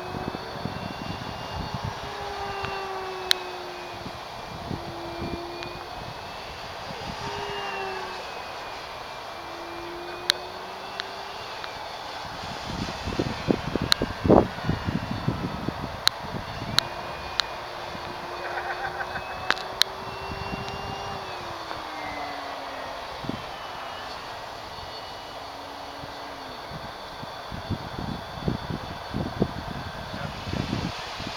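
Electric motor and propeller of an E-flite Carbon-Z model plane flying overhead: a steady whine that glides up and down in pitch as the plane manoeuvres and passes. Wind buffets the microphone, heaviest about halfway through, with a few sharp clicks.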